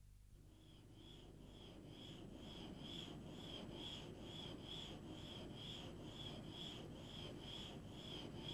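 A glass mirror blank being ground back and forth over a glass tool disc with coarse 120-grade carborundum grit. Each push and pull gives a faint gritty scrape, about two a second, in a steady rhythm that grows slightly louder.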